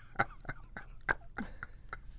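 A person quietly coughing and clearing the throat: several short sounds spread through the two seconds.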